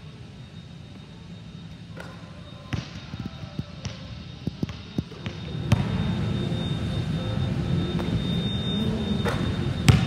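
A basketball bouncing on an indoor gym court: scattered sharp thuds, irregular rather than a steady dribble. About six seconds in, a louder steady low rumble comes in under the bounces.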